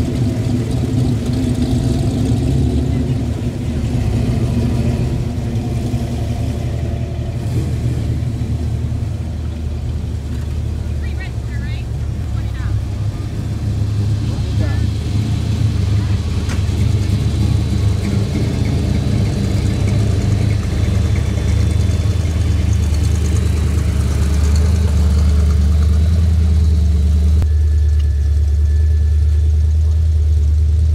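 Classic cars driving slowly past one after another, engines running at low speed with a steady low note that grows louder near the end as the next car pulls up. People talk in the background.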